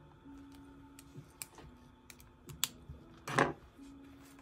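Light desk-handling sounds: a few small clicks from a pen and a paper planner, then a short, louder scuff near the end as the planner is slid across the desk, under faint soft music.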